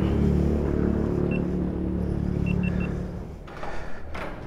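Kawasaki Ninja 650 parallel-twin engine idling steadily through an aftermarket exhaust, with four short high electronic beeps, one a little over a second in and three in quick succession about halfway through. The engine sound fades away near the end.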